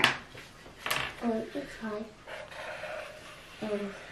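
A person's voice in a few short, quiet murmured syllables, with a light click about a second in.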